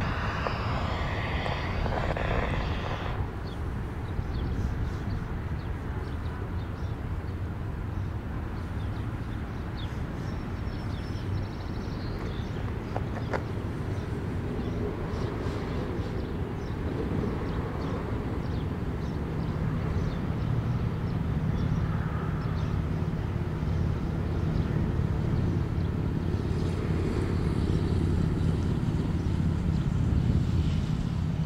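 Distant diesel locomotive of a passing passenger train across the river: a low, steady engine drone that grows louder through the second half.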